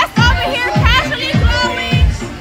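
Club dance music on a loud sound system, with a deep kick-drum beat a little under twice a second. A voice sings or shouts over it.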